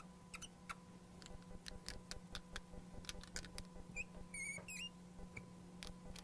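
Felt-tip marker ticking and tapping faintly on a glass lightboard as lines are drawn, with a short squeak of the tip on the glass about four seconds in.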